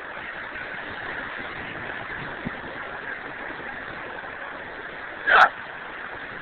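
Steady outdoor beach background noise, an even hiss with no distinct events, with a short voice sound about five seconds in.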